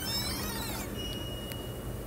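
Synthesized outro sound effect: a shimmer of sweeping pitch glides that fades within the first second, followed by a single steady high tone with a brief click in the middle.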